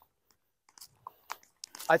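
Footsteps on dry grass: a few soft crunches about half a second apart after a near-silent start, with a man starting to speak at the very end.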